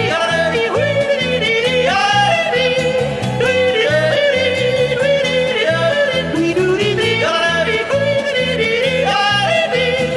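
A male yodeler yodeling the refrain of a Tyrolean folk song, his voice leaping up and down between held notes, over a band accompaniment with a steady bass beat.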